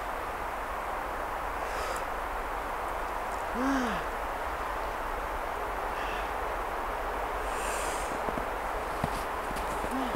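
A woman's single drawn-out 'ah' exclamation that rises and then falls in pitch, a little over three seconds in, over a steady background hiss. A few faint clicks near the end.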